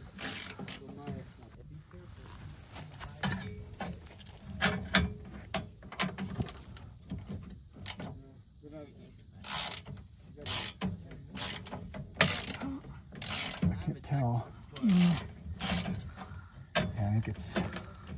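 Hand ratchet wrench clicking in repeated short bursts as its handle is swung back and forth on a rusty bumper bolt. The bursts come about once a second in the second half.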